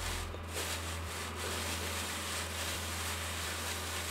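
Gloved hands rubbing dry carrot seed heads and chaff across the wire mesh of a coarse sieve: a faint, steady scratchy rasp, over a low steady hum.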